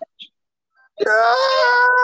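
A person's long drawn-out vocal wail, held on one slightly falling pitch for more than a second, starting about halfway in.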